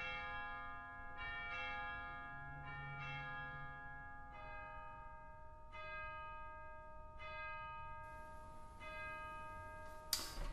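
Bells struck one at a time at different pitches, roughly one strike every second or so, each ringing on and overlapping the next.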